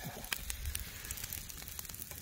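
Wood campfire crackling under steaks on a wire grill: irregular sharp pops over a low steady hiss.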